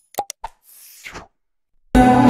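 Short click and pop sound effects from an animated subscribe-and-share reminder, followed about a second in by a soft whoosh. Live music starts abruptly at the very end.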